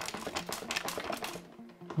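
Something loose rattling inside the plastic case of a Burdick Eclipse 850 electrocardiogram machine as it is tipped in the hands: a quick run of small clicks and clatters that thins out after about a second. It is a sound the machine shouldn't make, a sign of a part come loose inside.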